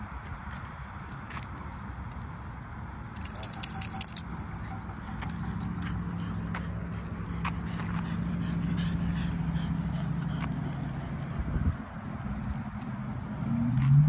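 Small metal objects jingling briefly about three seconds in, then a steady low hum lasting several seconds.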